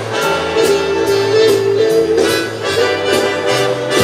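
Background music: a held, reedy melody over a walking bass line with a steady beat.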